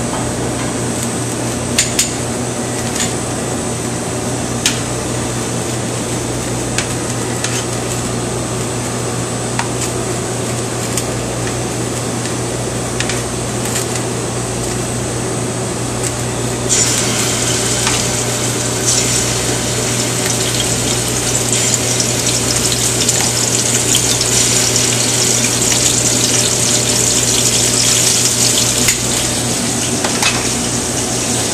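Scallops sizzling as they are laid into a sauté pan of oil heated nearly to smoking on a gas burner. The sizzle starts suddenly a little past halfway and stays loud. Before it there is a steady kitchen hum with a few clinks of pans.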